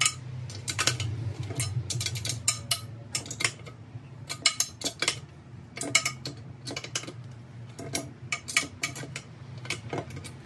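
Steel hex key clinking and tapping against the small rim bolts and aluminium barrel of a three-piece wheel as it is fitted and turned on bolt after bolt, in quick irregular clusters of metallic clicks.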